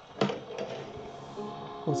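A sharp button click on the Audio Crazy AC-RC86BT boombox about a quarter second in, then broadcast audio from its speaker: faint music and, near the end, a voice.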